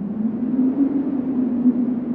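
Low steady droning tone from the intro's sound design, with a faint noisy hiss above it and a slight upward drift in pitch.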